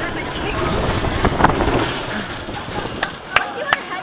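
Skyrush roller coaster train rolling slowly along the track with a low rumble, then three sharp clicks in the last second.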